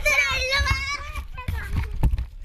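A young girl calling a dog to come to her in a high-pitched voice, followed by a couple of soft thumps.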